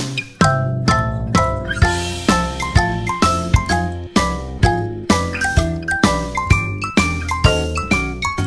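Background music: a light, tinkly melody of bell-like notes over a steady beat.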